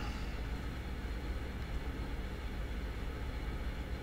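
Steady low background hum with faint hiss: room tone, with nothing else happening.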